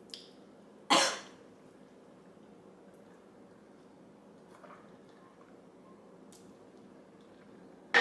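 A woman coughs once, short and sharp, about a second in, reacting to a sip of a salt-rimmed margarita; the rest is quiet room tone.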